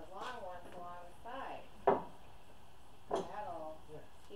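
Indistinct voices in short phrases, with a sharp knock just before two seconds in and a smaller one about a second later.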